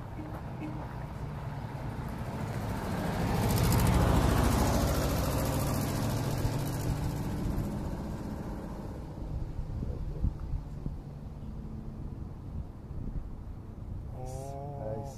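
A vehicle passing by: its noise swells to a peak about four seconds in, then fades away slowly.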